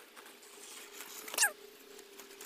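Bicycle brake squealing once, briefly, about a second and a half in, its pitch wavering and falling, as the rider brakes hard to stop, with faint crunching of tyres on gravel.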